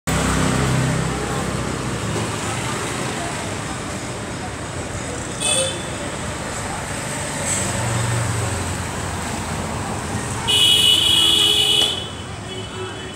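Street traffic noise with vehicle horns: a short toot about five and a half seconds in, then a longer, louder horn blast over the last second and a half.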